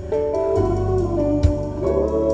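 Music with guitar and deep, sustained bass playing through a car audio system driven by a Top Palace amplifier-processor with an 8-inch subwoofer, with one sharp drum hit about one and a half seconds in.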